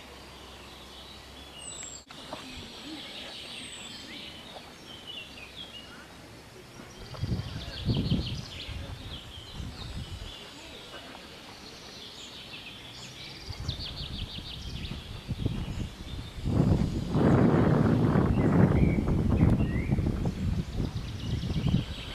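Birds chirping and singing, with a low rumbling noise that swells briefly about seven seconds in and is loudest over the last five seconds.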